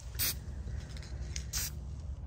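Two short hisses from an aerosol can of gold spray paint: a quick burst just after the start and a slightly longer one about a second and a half in.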